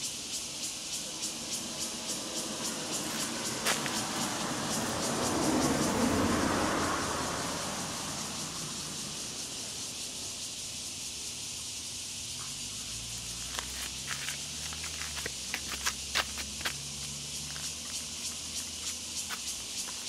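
Outdoor background: a steady high hiss with rapid fine ticking. A vehicle swells past about five to seven seconds in, and a low engine hum with a slowly wavering pitch runs through the second half, with scattered sharp clicks.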